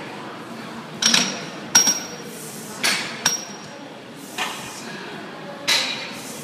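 Metal clanks from a plate-loaded seated calf raise machine being set up: about six sharp, irregular knocks of steel on steel, each with a brief ringing tone.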